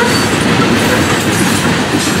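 Florida East Coast Railway freight train's hopper cars rolling past close by: a steady, loud rumble of steel wheels and trucks on the rails.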